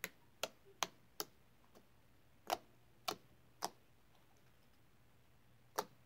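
Homemade slime being squeezed and kneaded by hand, making sharp, irregular clicks and pops as air pockets in it snap. About eight clicks come in quick runs of three or four, then there is a pause of about two seconds before one more near the end.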